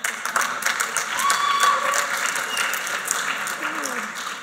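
An audience applauding, many hands clapping at once, with a few voices calling out over the clapping.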